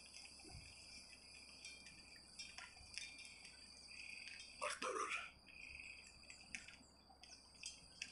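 Faint, steady chirping of crickets in a night-time ambience, with a brief voice about five seconds in.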